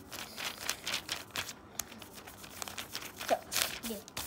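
Pencil, eraser and hand rubbing and rustling on the paper pages of a spiral notebook, in quick, irregular scratchy strokes. A short voice-like sound comes just past three seconds in.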